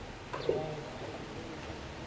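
A single brief, low bird call about half a second in, over a quiet open-air background.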